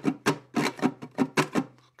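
Ukulele strummed with its strings muted by the fretting hand: short, percussive chunking strokes in a calypso strum pattern (down, down, up, up, down, up), about four strokes a second.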